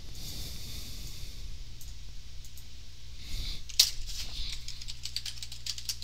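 Computer keyboard keys being typed, a quick run of light clicks through the second half with one sharper click about four seconds in, over a steady low hum.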